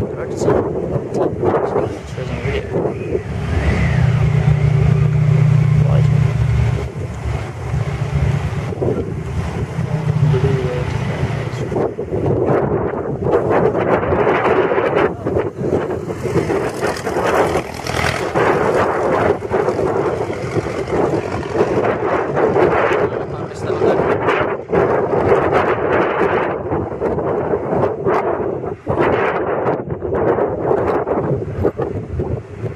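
Vintage racing car engines running and pulling away on a wet track, with a deep engine note loudest about four to seven seconds in. Wind buffets the microphone.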